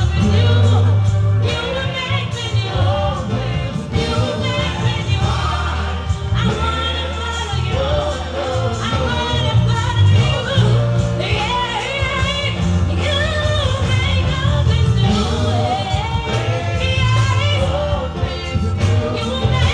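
Live gospel worship song: a woman leads into a microphone, backed by a small choir of singers, over instrumental accompaniment with a heavy bass line.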